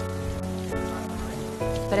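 Rain falling steadily, under a soft background score of sustained chords that shift to new notes twice.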